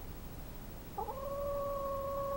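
A barred chicken gives one long call about a second in. The pitch wavers briefly at the start, then holds steady.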